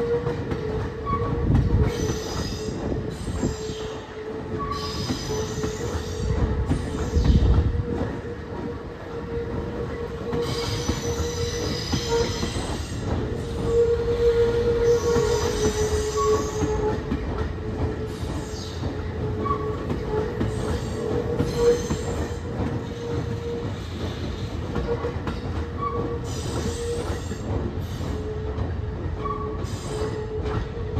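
Tokyo Metro 16000 series electric train moving slowly over depot tracks during a shunting move, with a steady high tone that wavers slightly throughout. A couple of low rumbles come in the first several seconds.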